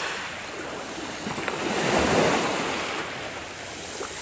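Wind blowing outdoors, a rushing noise that swells about halfway through and eases off again.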